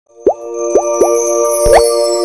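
Logo intro jingle: three quick bubbly pops that sweep upward, then a bigger rising pop near the end, over a held synth chord with high twinkling tones.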